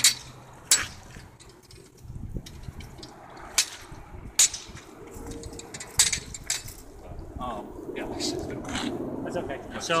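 Sword blade striking a swinging hanging pell: a series of sharp clicks, unevenly spaced and several seconds apart, as the blade knocks the target to steer it.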